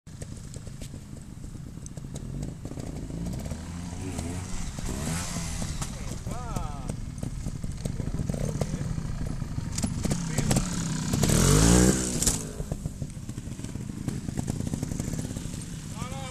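Trials motorcycle engine running at low revs and being blipped up and down as the rider works it over logs. The loudest rev comes about three-quarters of the way through.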